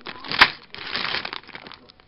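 Clear plastic LEGO parts bag crinkling as it is handled, with the bricks inside shifting, and one sharp crackle about half a second in.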